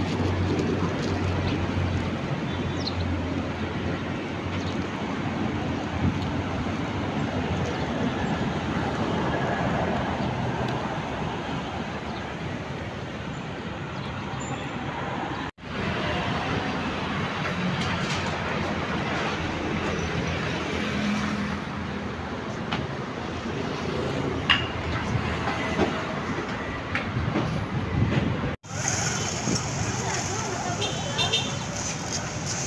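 Outdoor street noise with steady traffic running throughout. It cuts out abruptly twice, at the edits between shots.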